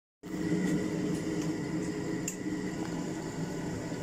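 Chaffoteaux Pigma Ultra gas boiler running with a steady mechanical hum made of several low tones, with a few faint ticks.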